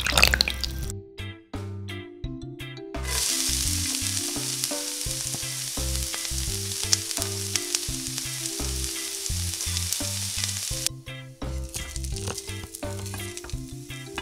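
Pork frying in hot oil in a miniature wok: a steady sizzle that starts about three seconds in and cuts off suddenly about three seconds before the end. A brief pour of oil into the wok comes right at the start.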